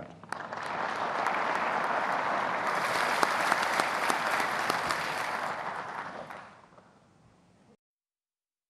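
A large audience applauding in a hall after a speech. The clapping swells just after the start, holds steady, then dies away after about six seconds.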